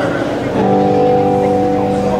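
Live praise band music in a church: sustained chords held steady, moving to a new chord about half a second in.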